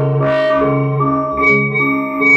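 Error Instruments Cloudbusting synthesizer run through a Meng Qi Wingie resonator, giving a cluster of sustained, ringing tones over a steady low note. The upper notes step in pitch every half second or so, with two bright swells in the first half.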